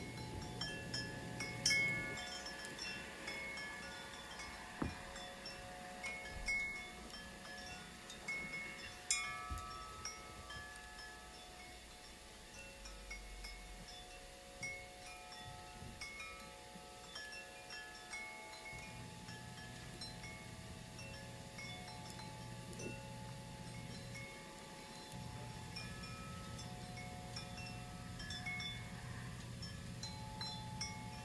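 Chimes ringing: many high, bell-like notes that overlap and ring on, over a low hum that drops out about two seconds in and returns for the last third. A few sharp clicks stand out, the loudest about two and nine seconds in.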